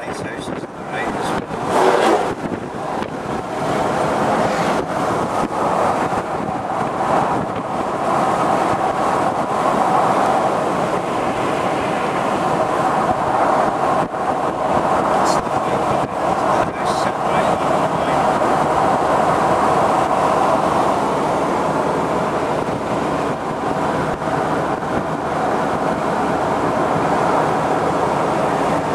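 Wind rushing through the open cabin of a Ford Mustang convertible with the top down, with tyre and road noise, driving at speed. It builds over the first few seconds, with a brief louder swell about two seconds in, then holds steady.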